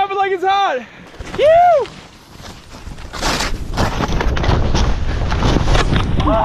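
Short whooping yells, then skis rushing through deep powder snow. Wind and snow spray buffet the action-camera microphone, and the rushing grows steadily louder from about two seconds in, with a sharp burst of noise near the middle.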